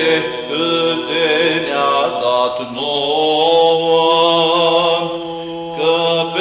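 Romanian Orthodox Byzantine chant in the seventh tone, sung unaccompanied: a long, drawn-out melismatic phrase with held notes over a steady low sustained note.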